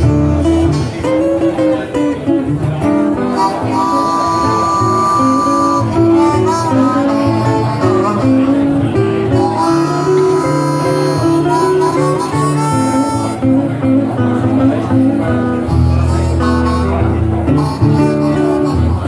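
Live blues: a harmonica played into a microphone, with held and bending notes, over acoustic guitar accompaniment.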